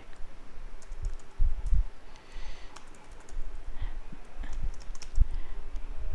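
Typing on a computer keyboard: irregular keystrokes, with a few dull thumps among them.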